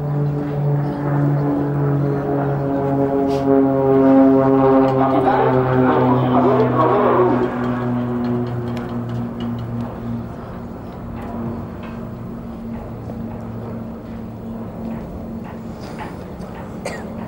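Band music during the medal presentation: slow, long-held low notes in chords, swelling through the middle and growing softer in the last few seconds.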